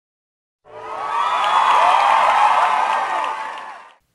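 Recorded crowd cheering and whooping, the spinner wheel's winner sound effect. It starts about half a second in, swells, and fades out near the end.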